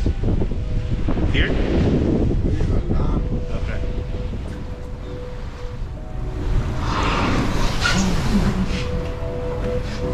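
Wind rushing on the microphone over the open sea, with water washing along a ship's hull. Background music with long held notes comes in about halfway through.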